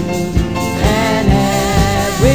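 Praise-and-worship band music with a steady beat, about two beats a second. From about a second in, a voice sings held, wavering notes over it.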